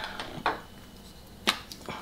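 A cosmetic container being handled: a short soft scrape about half a second in, then a sharp click about a second and a half in.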